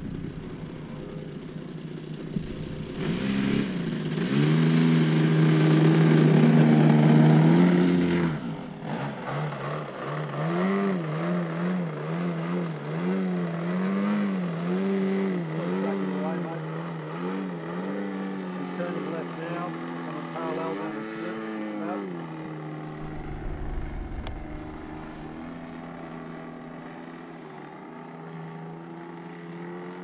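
DA-70 twin-cylinder two-stroke petrol engine and propeller of a large RC aerobatic plane, running loud at high throttle a few seconds in. The pitch then wavers up and down as the throttle is worked to hold the plane in a hover, before settling lower and quieter near the end.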